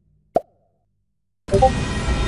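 A single short plop sound effect about a third of a second in, then music begins abruptly about a second and a half in.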